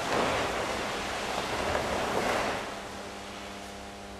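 Rustling and shuffling of a large group of karateka moving together: gi cloth and feet sliding on the mats as they step through a stance drill. It comes as one wash of noise that rises at the start and fades near the end.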